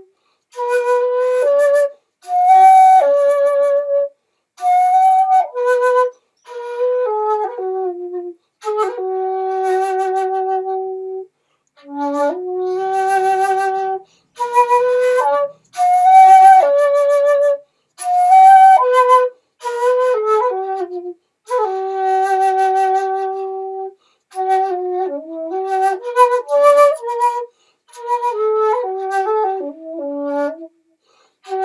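Solo bamboo shakuhachi playing a shima uta (Japanese island folk tune) in short phrases separated by breath pauses. Held notes waver with vibrato, with pitch slides between them and a breathy edge to the tone.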